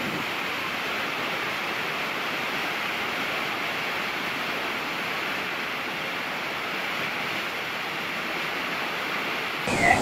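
Steady, even rush of a large waterfall's falling water and spray, with little bass. It changes abruptly to a louder water sound near the end.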